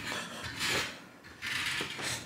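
Car bodywork being sanded by hand: sandpaper rubbing over the panel in a few separate back-and-forth strokes.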